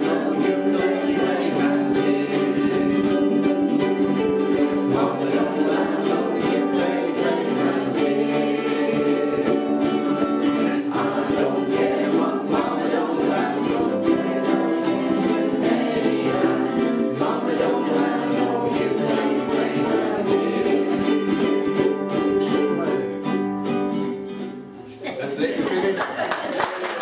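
A ukulele band strumming chords together while the group sings. The song ends about two seconds before the end, and applause starts right after.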